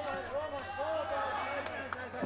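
Voices shouting at ringside during a kickboxing bout, short repeated calls, with one sharp smack near the end.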